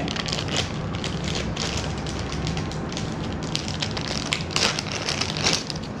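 Clear plastic packaging bags crinkling and crackling as they are handled, an irregular run of crackles.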